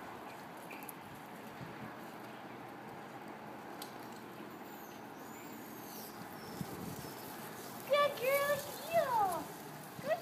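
Faint steady background with light footsteps, then, about eight seconds in, a woman's high, sing-song voice praising the dog in short sliding phrases as she bends over it.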